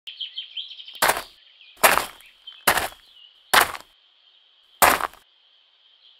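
Small birds chirping throughout, with five footsteps crunching on gravel about a second apart as the loudest sounds. The birdsong carries on alone after the last step.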